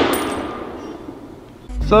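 Fading tail of a loud gunshot-like blast, a noisy rush that dies away over about a second and a half. A low music beat comes in near the end.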